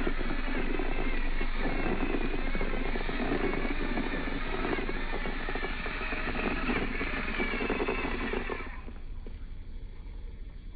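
Electric motor and geared drivetrain of a 1/24-scale RC rock crawler, a MOFO mini Bouncer on an Axial SCX24 base running on 3S through a Furitek Lizard Pro ESC, whining under throttle as it climbs rock. The sound drops away sharply near the end.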